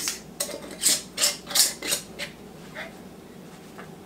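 Metal canning band being screwed onto a glass pint mason jar over its lid: a quick run of short scraping clicks of the metal threads turning on the glass for about two seconds, then only a couple of faint ones. The band is turned to fingertip-tight before the jar goes into the water bath.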